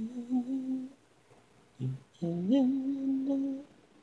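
A single voice humming a wordless a cappella melody: a held note for about a second, a short low note, then a note that slides up and holds for over a second.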